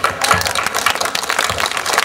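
Applause: many hands clapping in a dense, irregular patter.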